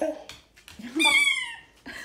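Dog whining with a toy held in its mouth: a short high cry about a second in that slides downward in pitch. It is a protest at being told to drop the toy.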